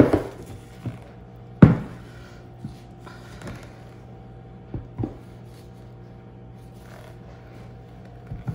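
A handful of short knocks and thuds as a plastic mixing bowl and a silicone loaf mold are moved and set down on a tabletop, the loudest about a second and a half in, the rest spaced out over the first five seconds, over a faint steady hum.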